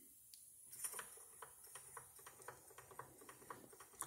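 Faint, even ticking, about four a second, from a small brass mini impeller pump turning over lightly on a thin round belt drive from a model engine.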